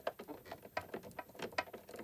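Faint, irregular small clicks and taps of plastic and metal as fingers handle a walking foot and its clamp screw against a sewing machine's presser bar.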